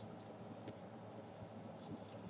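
Faint rustling and scraping of a small square of origami paper being handled and creased against a tabletop, with a few brief soft scrapes.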